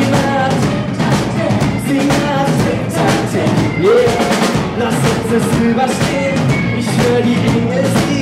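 Live rock band playing: a male lead vocalist singing over electric guitar, bass guitar and a drum kit with steady drum strikes.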